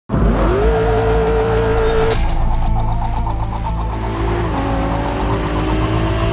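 Race-car engine sound effect: the engine revs up quickly, holds high revs, then drops in pitch at gear shifts about two and four and a half seconds in, climbing slowly after each.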